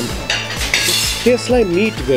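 Dishes and cutlery clinking in a short clatter within the first second, over steady background music; a man's voice follows near the end.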